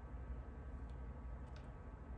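Quiet room tone with a steady low hum and a few faint ticks, about one second in and again at one and a half seconds, as fingernails handle a small nail strip.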